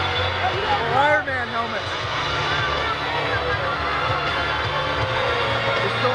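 Large arena crowd, many voices shouting together in a steady din, with one loud rising-and-falling yell close to the microphone about a second in.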